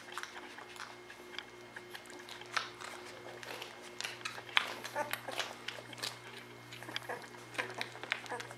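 Newborn Weimaraner puppies nursing: many short, wet suckling and smacking clicks, irregular and busiest about halfway through, over a steady low hum.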